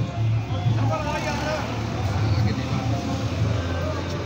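Indistinct background voices over a steady low rumble of passing road traffic, with music playing.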